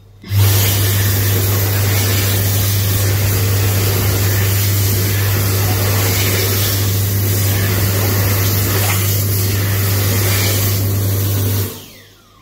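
Dyson Airblade hands-in hand dryer blasting air: it starts suddenly just after the start, gives a loud, steady rush of air over a low hum for about eleven seconds while hands are held in the slot, and cuts off sharply near the end as they are withdrawn.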